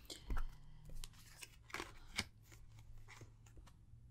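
Tarot cards handled in the hands: a few faint, short clicks and rustles of card stock as the cards are slid and tapped together.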